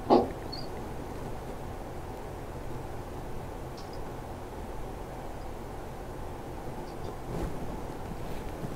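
Steady low hum and hiss of an open video-call microphone, with one short, loud knock just after the start and a fainter one near the end.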